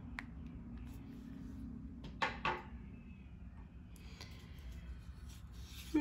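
A quiet room with a low steady hum and two small sharp taps about two seconds in, half a second apart.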